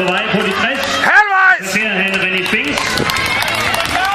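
A man's voice calling out commentary, with a loud drawn-out call about a second in, over crowd noise.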